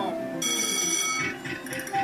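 Electronic sounds from a Merkur El Torero slot machine during a free spin. A bright ringing chime of several steady tones sounds about half a second in and lasts under a second, then softer tones follow as a winning line is shown.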